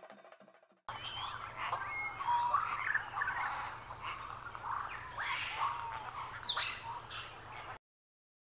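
Several birds chirping and calling over a faint low hum. The sound starts suddenly about a second in, as the last of the music dies away, has one loud high call near the end, and cuts off abruptly.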